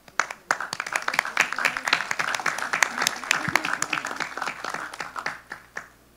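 Audience applauding, a dense patter of hand claps that starts just after the opening and thins out to stop near the end.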